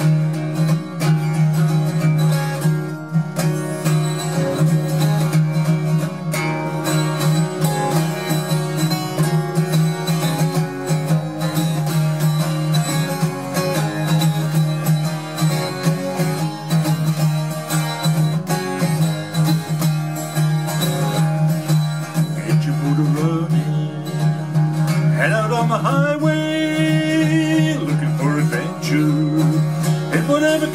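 12-string acoustic guitar strummed steadily in a driving rock rhythm, chords ringing full. It is tuned down a half step, so the E-minor shapes sound a semitone lower.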